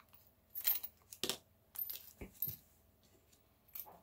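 Small metal toggle clasps clinking against each other in a little plastic bag as they are handled, with the bag rustling: a handful of light, separate clicks and clinks and one soft knock about halfway through.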